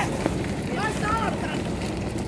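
Wind buffeting the microphone in a steady rush, with short shouted calls from people running alongside about a second in.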